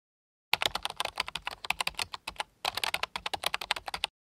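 Rapid, irregular clicking at about ten clicks a second, starting about half a second in. It comes in two runs with a short pause a little past the middle and stops at the end.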